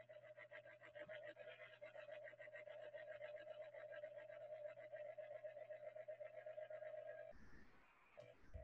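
Near silence: a faint steady hum with a fast fluttering buzz over it, which cuts off shortly before the end.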